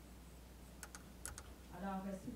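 A few faint, sharp clicks, two close pairs in the middle, over a low steady hum. A voice starts up just before the end.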